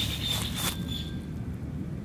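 Steady low background rumble, with a faint thin high tone during the first second that then fades.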